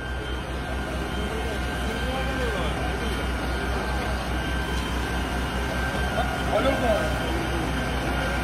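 Outdoor street noise: a vehicle engine idling with a steady low rumble, under faint voices of people talking.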